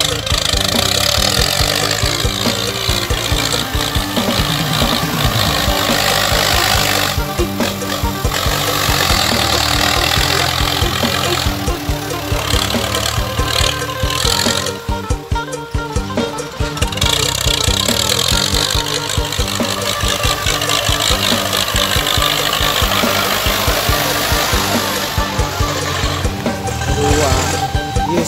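Ford tractor's engine running under load as it pushes soil with its front blade, the exhaust roaring. Music plays alongside it.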